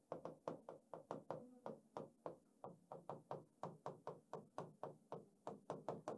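Marker pen writing by hand on a sheet of paper on a board, making faint, quick taps at about three or four a second.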